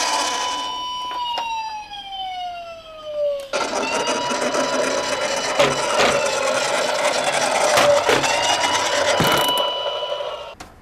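Toy police car's electronic siren: a wail that holds and then slides down in pitch, and restarts about three and a half seconds in, rising and then holding. From the restart a rushing noise and a few knocks run under it while the toy drives along the board.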